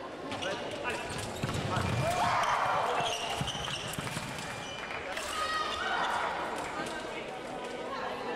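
Sabre fencing exchange: quick footwork thumps on the piste and clicks of blade contact, with a loud shout about two seconds in as the touch lands. Voices in the hall continue, rising again around five seconds in.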